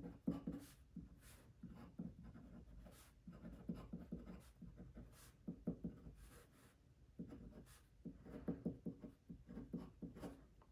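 Faint scratching of a glass dip pen's nib on paper as words are handwritten in quick short strokes, with a brief pause about seven seconds in.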